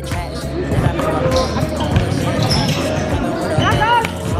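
Basketball game on a hardwood court: a ball bouncing in short knocks, with players' voices, under background music with a steady bass.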